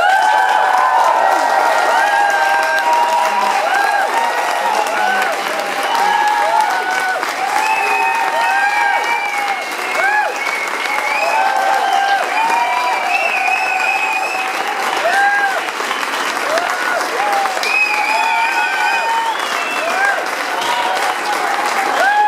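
Audience applauding loudly after a song ends, with cheering calls rising and falling over the clapping. The applause breaks out suddenly and carries on steadily.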